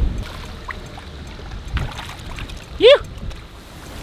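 Wind buffeting the microphone in a steady low rumble, with a brief rising vocal exclamation from a man about three seconds in.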